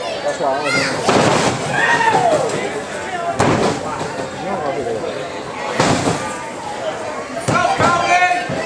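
Crowd voices shouting and calling out around a wrestling ring, broken by about four heavy thuds of bodies hitting the ring mat, roughly a second, three and a half, six and seven and a half seconds in.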